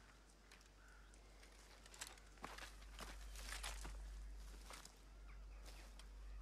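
Faint footsteps through forest undergrowth: scattered soft crackles and snaps of twigs and bracken, over a low steady rumble.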